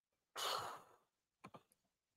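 A person sighs: one breathy exhale lasting about half a second. Two faint short clicks follow about a second later.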